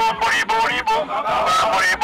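Short horn honks repeating in a steady rhythm, about two to three a second, over a group of voices chanting or singing.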